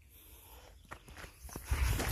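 Footsteps on a dry dirt and gravel path: quiet at first, then a few small crunches and clicks, with heavier low thuds of steps near the end.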